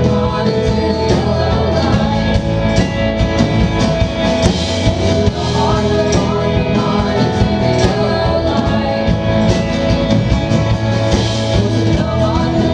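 Live indie-rock band playing a song: acoustic and electric guitars, keyboard and a drum kit with regular cymbal and drum hits.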